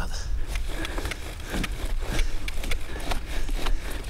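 Bow drill for friction fire-lighting: the bow sawed back and forth spins a wooden spindle in a wooden fireboard, giving a repeated dry scraping of wood on wood, about three strokes a second, over a steady low rumble.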